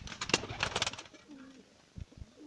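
Domestic pigeons cooing: a low, wavering coo about halfway through, after a quick run of rustling, clattering clicks in the first second.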